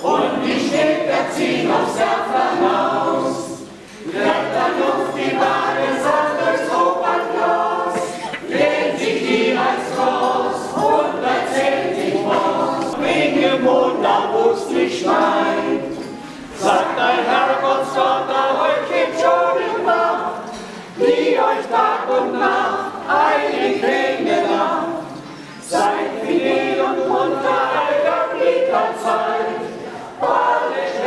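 Mixed choir of men's and women's voices singing a cappella, in phrases with brief breaks between them.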